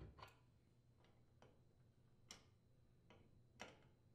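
Faint metallic clicks of wrenches on the brass flare nuts of an oven gas valve's supply tubes as the nuts are tightened, about seven clicks at irregular intervals over a low steady hum.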